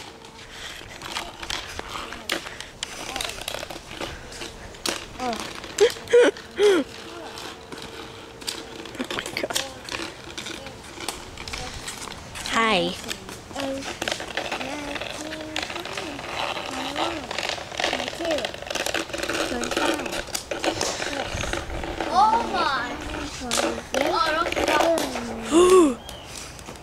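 Children's voices with indistinct words and calls, loudest near the end, over scattered clicks and taps. A faint steady hum runs through the first half.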